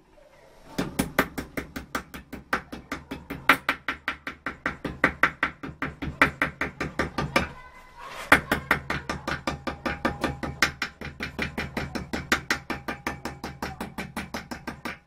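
Ball-peen hammer rapidly striking a thin metal strip clamped in a steel bench vise, about five blows a second, beating it into shape over the vise jaws. The hammering breaks off briefly about halfway through and then resumes.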